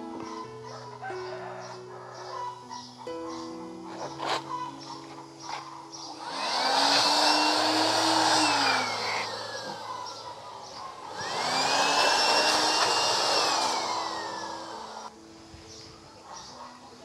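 Electric blower run in two bursts of about three seconds each, its motor whining up to speed, holding, then winding down each time, blowing leaves off the tree and rock. Background music plays underneath.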